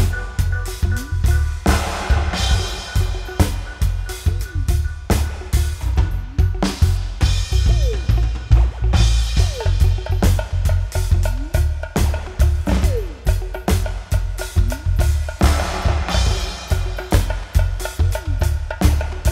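Live band playing an instrumental drum-and-bass section: an acoustic drum kit plays a fast, busy beat over a heavy bass line. Short falling electronic sweeps repeat through it.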